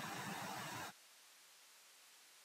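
Faint steady hiss of the recording's background noise, cutting off abruptly to dead silence about a second in.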